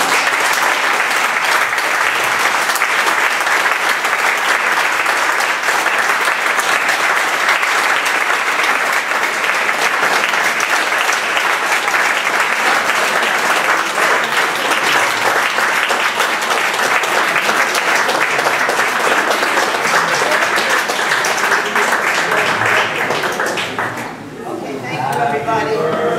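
An audience applauding steadily for over twenty seconds, dying away near the end.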